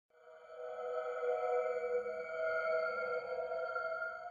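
Intro sting of steady electronic tones sounding together as one held chord, fading in over the first second and then held without change.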